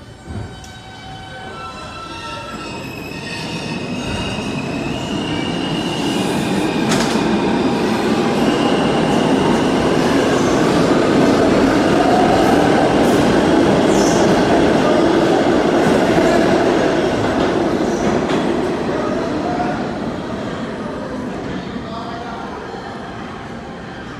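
Siemens-propulsion R160 subway train pulling out of the station. As it starts, its traction motors give a stepped electronic whine rising in pitch; then the rumble of steel wheels on rail swells as the cars speed past, peaks around halfway and fades as the train leaves.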